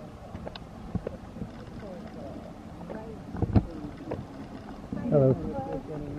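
Footsteps on a dirt forest trail at walking pace, a step about every half second, with a louder thump about three and a half seconds in. A person's voice is heard briefly about five seconds in.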